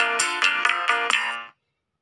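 The ORG 2021 Android keyboard app sounds an E major chord as a run of several quick, bright synthesized notes. It stops sharply about a second and a half in.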